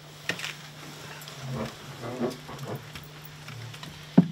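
Hushed crowd in a room: a steady low hum under a few sharp clicks, the clearest about a third of a second in, and faint murmured vocal sounds from people around the middle.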